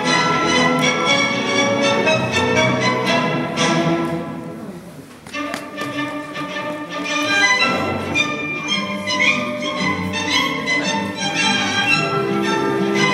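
Orchestral quadrille dance music led by violins, dropping away briefly about four to five seconds in before starting up again.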